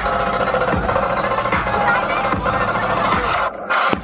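Loud electronic bass music in the dubstep style, with repeated falling pitch sweeps in the bass.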